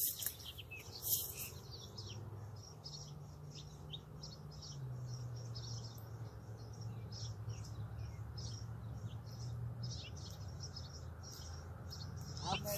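Small songbirds chirping repeatedly in quick short calls, over a low steady hum that drops in pitch about five seconds in.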